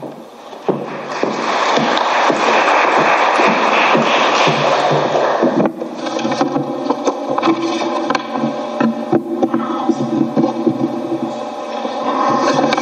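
Audience applauding for about five seconds, then breaking off. After that a steady drone of several pitches with scattered small clicks.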